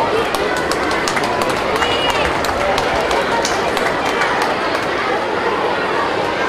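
Outdoor crowd chatter: many voices talking at once, with no one speaking clearly. Scattered sharp clicks run through the first two-thirds.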